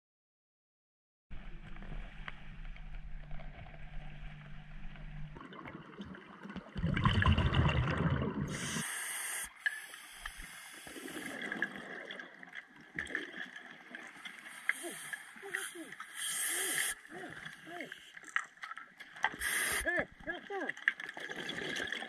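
Scuba diver's breathing recorded underwater by the camera, starting about a second in: short hissing inhalations through the regulator and bursts of exhaled bubbles gurgling past the housing, the loudest around the middle.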